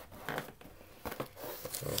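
Hands handling trading cards and their wax-paper pack wrappers on a table: a few short rustles.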